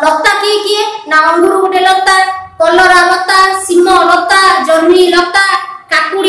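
A woman singing unaccompanied, with long held and gliding notes and two short breaths, about a second in and near the middle.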